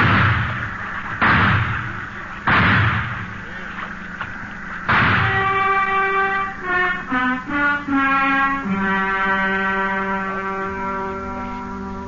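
Four gunshot sound effects in a radio drama, sudden bangs a second or two apart, each with a short echo. From about five seconds in, a music bridge takes over: a quick run of notes that settles into long held chords.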